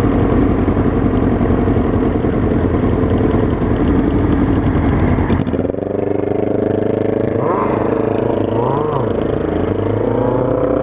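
Kawasaki ZX-9R sport bike's inline-four engine heard from the rider's helmet camera, with wind rush on the microphone while cruising. About halfway through, the wind drops away and the engine settles to a lower, steadier note as the bike slows in traffic, with a couple of brief rises and falls in pitch.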